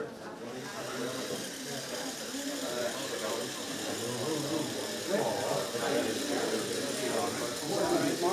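Murmur of several people talking in a room, over a steady high whir from a small electric motor.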